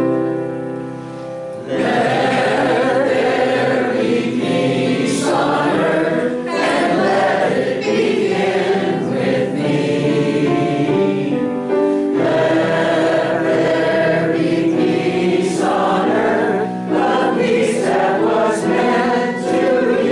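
A congregation of mixed voices singing a song together, coming in about two seconds in after a short piano introduction, with brief breaks between phrases.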